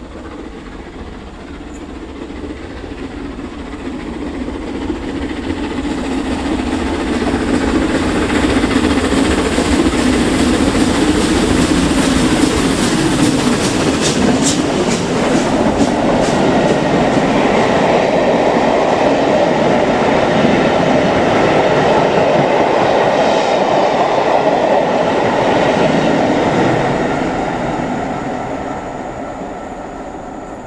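LMS Royal Scot class 46115 Scots Guardsman, a three-cylinder 4-6-0 steam locomotive, passing at speed at the head of a train of coaches. The sound builds over several seconds as it approaches, drops in pitch as the engine goes by about halfway through, then stays loud as the coaches roll past before fading near the end.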